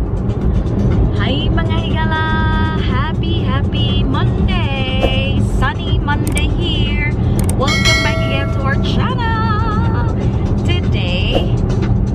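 Steady low road rumble inside a moving car's cabin, with background music carrying a melody of held and wavering notes over it.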